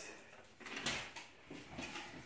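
Faint rustling and a few light knocks as a hand reaches into a stainless steel stock pot to draw the last name slip.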